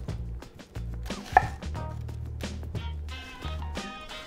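Chef's knife slicing down through an onion half and tapping the end-grain wooden cutting board in a series of separate cuts, the sharpest about one and a half seconds in.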